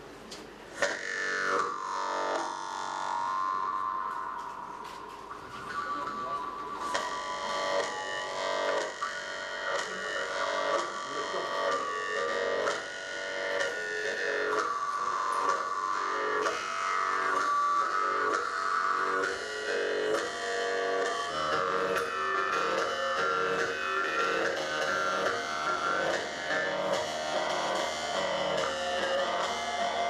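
Several Yakut khomus (jaw harps) played together, a twanging drone with overtone melodies sliding above it. It opens with a single falling glide, then thickens and grows louder from about seven seconds in.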